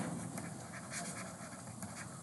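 Faint scratching of a stylus writing on a tablet or pen-display screen.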